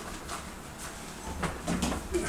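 A bare hand smearing thick oil paint across a stretched canvas: a few quick rubbing strokes, faint at first and louder and closer together in the second half.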